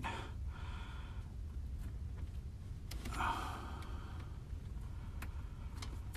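A man breathing heavily, with two long exhales about half a second and three seconds in, and a few light clicks as jumper wires are fitted to the furnace control board's low-voltage terminals. A low steady rumble runs underneath.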